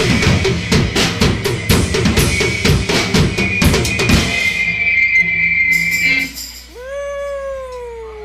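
Drum kit played loud and fast: a dense run of kick, snare and tom hits that stops about four and a half seconds in. Near the end a single held note slowly slides down in pitch.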